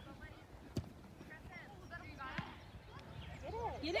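Faint, distant shouting of players and spectators across an outdoor soccer field, with one sharp knock just under a second in and a softer one a little after two seconds. Near the end a close voice starts to shout.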